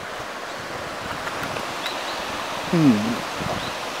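Steady rushing of a stream flowing in the valley below, with a brief low voiced murmur about three seconds in.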